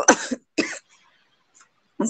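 A person coughing: two short coughs in the first second.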